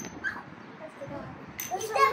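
Short, faint whimpering and whining vocal sounds from a young child, with a louder high-pitched whine starting near the end.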